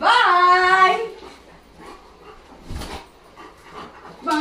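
A German Shepherd gives one loud whine, about a second long, that rises and then slides down in pitch. A soft knock follows near the end.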